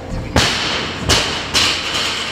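Fast bench-press reps with an 80 kg barbell: three sharp sounds, each a thud followed by a hissing rush, the second and third about half a second apart.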